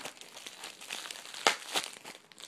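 Plastic packing material, bubble wrap and packing peanuts, crinkling and rustling as bottles are handled in a shipping box, with a sharp click about one and a half seconds in.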